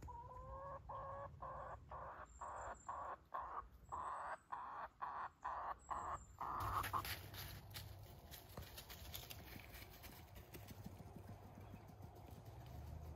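A hen calling over and over: a run of about a dozen short, pitched calls, the first one rising, that stops about six and a half seconds in. After that, only faint crackling of dry leaves.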